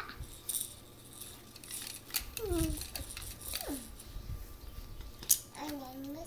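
A young child's voice making a few short sounds that fall in pitch, with sharp clicks of plastic toy rings rattling on a baby's play gym.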